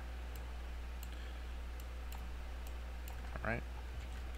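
Faint, irregular light clicks of a pen stylus tapping on a drawing tablet while sketching, over a steady low hum.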